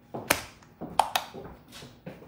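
A few sharp taps and knocks with brief rustling between them: one about a quarter second in, then two close together around one second in.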